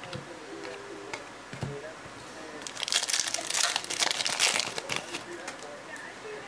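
Foil wrapper of a Topps Fire trading card pack being torn open and handled: a dense crackling burst that runs from about two and a half to five seconds in. A few light clicks of cards being handled come before it.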